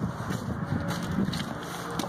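Wind blowing on the microphone, an uneven rumbling hiss with small irregular bumps.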